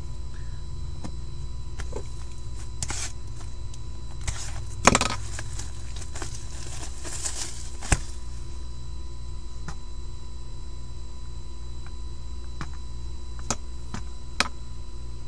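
Hands handling and opening a cardboard hockey card hobby box: scattered clicks and knocks, the loudest about five seconds in, and a rustle from about six to seven and a half seconds, over a steady low electrical hum.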